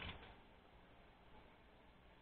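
Near silence: room tone, with one faint brief tick right at the start.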